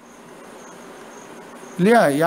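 A pause in a man's speech filled with a steady hiss and a faint, high, on-and-off chirping tone; his voice comes back in near the end.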